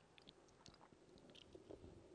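Near silence: faint indoor arena room tone with scattered soft clicks and low knocks.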